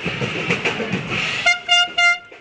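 Busy parade noise with a few knocks, then a horn blowing three short blasts on one high note about one and a half seconds in.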